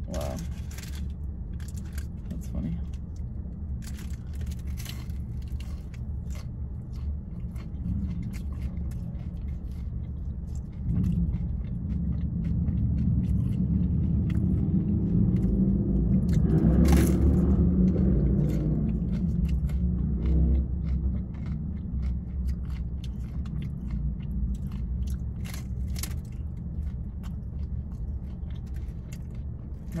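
Close-up crunching and chewing of a crispy fried taco shell, with a steady low rumble underneath. The rumble swells louder in the middle and then fades back.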